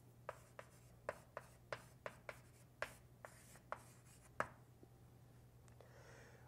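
Writing on a board by hand: a quick series of faint, short strokes, about a dozen, mostly in the first four and a half seconds.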